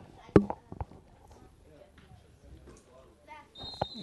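A football kicked once, a single sharp thud just after the start, then faint field ambience. Near the end a referee's whistle starts a steady high blast, signalling the end of the first half.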